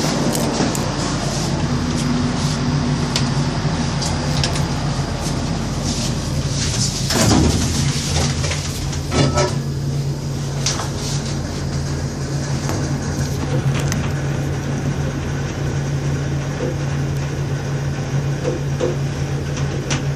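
ThyssenKrupp traction elevator heard from inside the car: scattered clicks, then the sliding car doors running shut in two louder sweeps about seven to nine seconds in. A steady low hum of the lift runs throughout.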